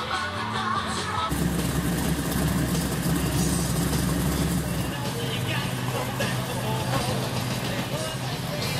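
Background rock-and-roll music that cuts off about a second in, giving way to outdoor car-show sound: a steady low engine rumble with voices in the background. The lowest part of the rumble drops away about five seconds in.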